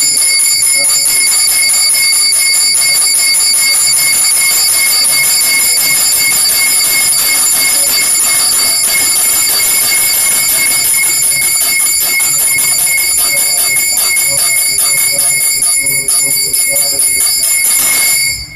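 Hindu puja hand bell (ghanta) rung rapidly without pause, a loud steady ringing of several high bell tones. It stops abruptly at the very end.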